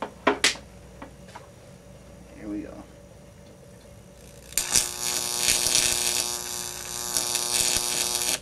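High-voltage arc from a 12,000-volt neon sign transformer: a loud buzz with a strong mains hum, striking a little past halfway through. Two sharp clicks come just after the start.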